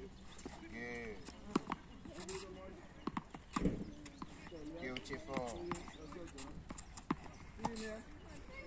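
Tennis balls being hit with rackets and bouncing on a hard court: a string of sharp, irregularly spaced knocks, the loudest about halfway through.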